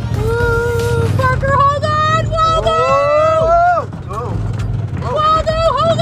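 Polaris RZR side-by-side's engine running as it climbs a rough rocky trail, a steady low rumble heard from inside the open cab. Over it come long drawn-out voice sounds, held and rising in pitch, which are louder than the engine.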